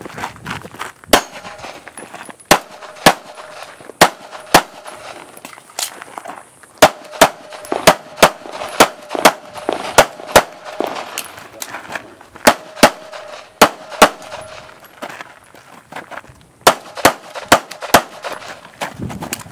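Handgun shots fired at speed on an IPSC stage, often in quick pairs, in strings of several shots with short pauses between them, about two dozen shots in all.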